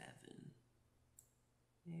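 Near-silent room tone with one faint, short computer-mouse click about a second in.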